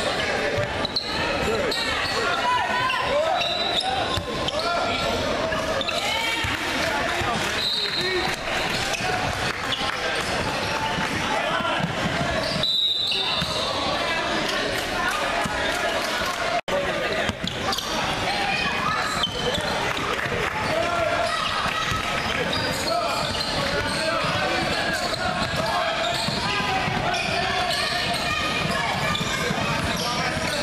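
Echoing gym noise of a youth basketball game: indistinct voices of spectators and players with a basketball dribbling on the hardwood floor. The sound cuts out for an instant a little past the middle.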